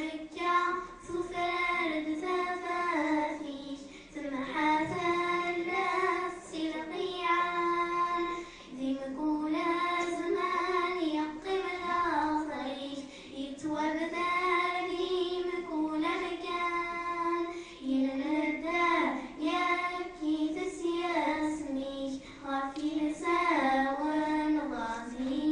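Two young girls singing a Kabyle song in long, held melodic phrases.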